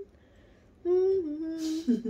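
A person humming two held notes, the second a step lower, starting about a second in, ending in a breathy, laugh-like exhale and a short wavering lower note.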